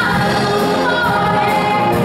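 A woman singing into a microphone with vibrato, her voice carried over a full concert wind band with brass.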